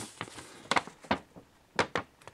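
Paper instruction leaflet being handled: three short, sharp clicks and light rustles spread over two seconds.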